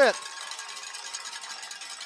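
Faint, even stadium background noise, crowd and field ambience picked up by the broadcast microphone, with a commentator's word cutting off at the very start.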